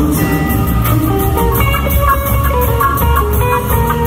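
Rock band playing live in an instrumental passage: electric guitar notes over bass and drums, recorded by a phone in the audience.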